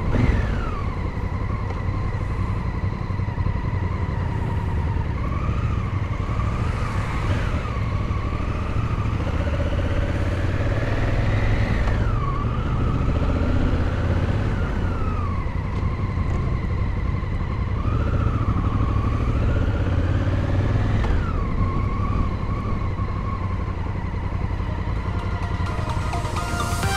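Honda Africa Twin 1000's parallel-twin engine under way, its pitch climbing as it pulls through a gear and dropping sharply at each shift, several times over, over a steady low wind rumble on the microphone.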